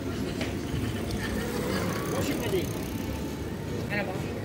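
Street ambience: indistinct voices of passers-by over a steady low rumble of street noise, with no single loud event.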